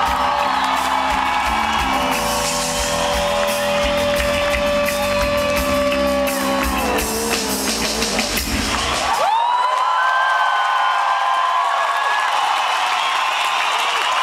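Live rock band playing the closing bars of a song, with distorted electric guitars, bass and drums at full volume. About nine seconds in, the drums and bass stop and a sustained electric guitar note is left ringing.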